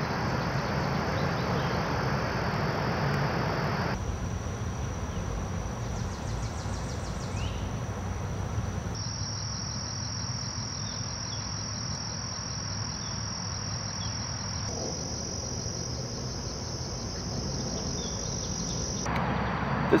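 Crickets trilling in a steady, continuous high-pitched chorus, shifting slightly in pitch and level a few times, over a low hum of distant traffic.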